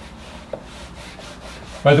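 Whiteboard eraser rubbed quickly back and forth across the board, a run of soft, evenly repeated strokes, with one small knock about half a second in.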